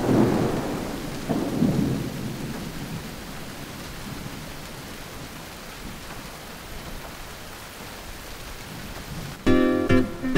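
Steady heavy rain with thunder rumbling twice in the first two seconds, the rumbles fading into the rain's even hiss. About nine and a half seconds in, a plucked acoustic guitar starts playing loudly.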